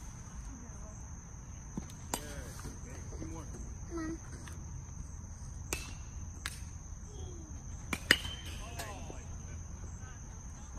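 Steady high chirring of crickets, with a few sharp pings of metal baseball bats striking balls, the loudest about eight seconds in, ringing briefly.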